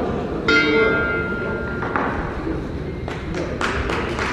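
Ring bell struck once, ringing for a little over a second before it cuts off: the bout's timing bell, typical of the end of a round. A few sharp thuds follow near the end.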